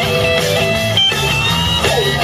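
Live blues-rock band playing an instrumental passage: electric guitar holding sustained notes over bass and drums, with a bent note near the end.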